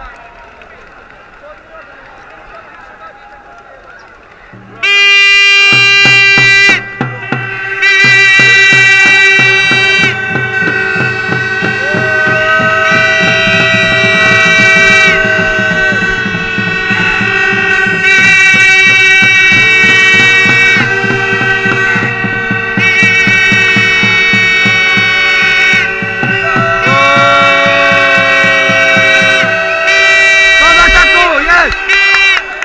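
Loud folk wind instruments, reedy and horn-like, start about five seconds in. They play a melody over a steady held drone note, with a drum beating a fast, even rhythm under them. Before they start there is only low crowd murmur.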